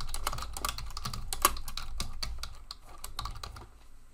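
Typing on a computer keyboard: a quick, steady run of key clicks that thins out and fades near the end.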